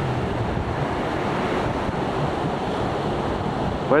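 Baltic Sea surf washing steadily onto a sandy beach, with wind blowing across the microphone.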